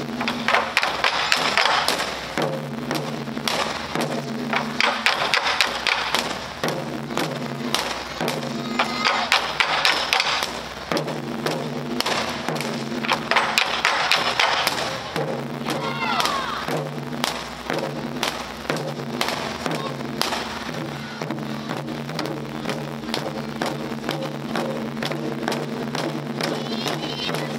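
Ensemble of Japanese taiko drums struck with wooden bachi, a dense, continuous run of strikes from several drummers at once, with held low tones that stop and start underneath.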